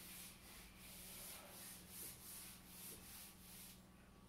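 Whiteboard eraser wiping dry-erase marker off a whiteboard in quick back-and-forth strokes, about three a second, stopping just before the end. The strokes are faint, soft swishes.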